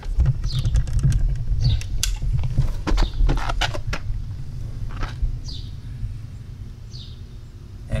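Handling noise from a camera being picked up and carried: low rumbling and a series of knocks and clicks on its microphone, heaviest in the first five seconds and fading after.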